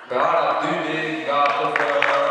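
A man's voice with drawn-out, held tones, then scattered hand clapping starting near the end.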